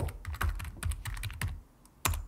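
Typing on a computer keyboard: a quick run of keystroke clicks that stops about a second and a half in.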